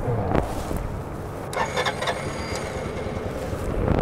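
Steady low engine rumble, with a sharp click about half a second in and light clicking and rattling in the middle, as jumper clamps are worked onto the scooter's battery after it failed to start.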